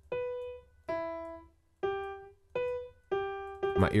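Single notes from a sampled piano in Kontakt 5, played one at a time by clicking the piano roll's keyboard: about six notes, each struck and fading, alternating between two pitches a third apart. These are candidate top notes for the next chord, being tried by ear.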